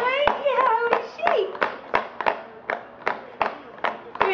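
A steady series of sharp taps or claps, about three a second, with a high, gliding voice squealing over the first second.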